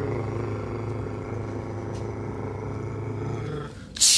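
A long, steady low hum held on one pitch, which stops just before the end.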